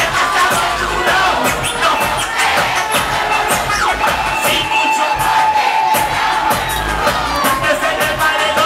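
Loud live reggaeton music over a sound system, with a crowd cheering and shouting along.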